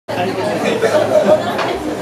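People talking, several voices chatting at once in a large room.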